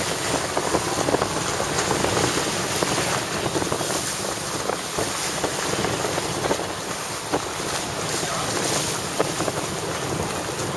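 Wind rushing across the microphone, with water splashing and slapping against a motorboat's hull as it runs through choppy sea. The rush is steady, broken by frequent small splashes.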